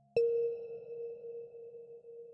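Ambient relaxation music: a single struck bell-like tone sounds just after the start and rings on at one steady pitch with faint higher overtones, fading slowly. The soft held tones that came before it stop at the strike.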